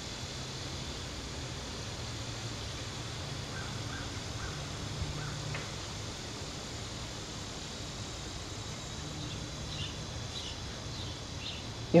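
Steady low hum over outdoor background noise, with a few faint, short bird chirps about four seconds in and again near the end.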